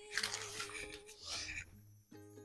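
Faint rustling of brown kraft wrapping paper in a few short bursts as a paper-wrapped gift is picked up and handled, over a faint steady hum.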